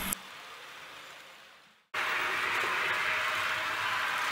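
Steady running noise of model trains on a layout. It fades and drops to silence just before two seconds in, then a similar steady running noise starts again.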